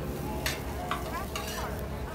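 Okonomiyaki sizzling on a hot flat-top griddle, with metal spatulas scraping and clinking against the griddle twice as the cabbage pancakes are lifted and turned.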